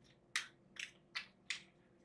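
A deck of tarot cards being shuffled by hand: four short, faint swishes of cards sliding against each other, about every half second.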